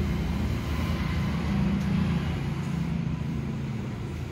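A steady low rumble, like a running motor.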